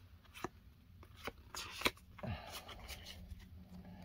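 Pokémon trading cards being handled and slid against each other in the hands, quiet and rustly, with a few sharp clicks of card edges.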